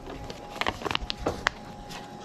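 A bag being handled: a few short, scattered crinkles and clicks, over a faint steady hum.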